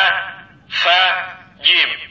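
A voice from a Readboy talking reading pen pronouncing short Arabic letter syllables one at a time, three separate syllables about a second apart, each falling in pitch.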